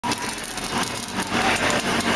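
Steady rushing noise on a boat under way at sea, with a low hum and a busy rapid rattle running through it.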